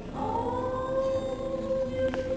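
A singer holds one long high note in a stairwell. The note begins a moment in, bends up slightly at its start, then holds steady at one pitch, with quieter acoustic accompaniment beneath.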